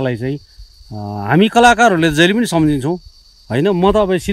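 Steady high-pitched drone of insects that carries on without a break, with a man's voice speaking over it at the very start and again for about two seconds in the middle.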